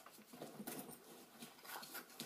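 Faint, irregular rustling and light handling noises of hands rummaging through a handbag.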